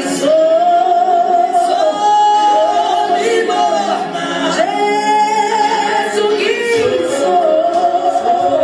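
A woman singing unaccompanied into a microphone: a slow melody of long held notes that glide from one pitch to the next.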